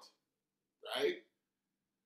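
Speech only: a man says one short word, "right?", about a second in, with dead silence around it.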